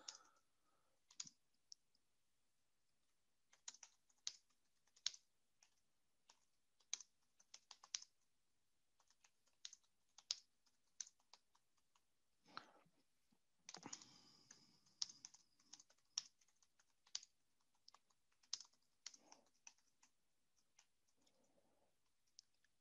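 Faint, irregular clicks of a computer keyboard as a message is typed, sparse at first and coming a little faster near the middle.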